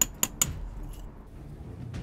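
Lump hammer striking a steel chisel set in a brick mortar joint, chipping out old cementitious mortar: three quick, sharp metallic taps in the first half-second.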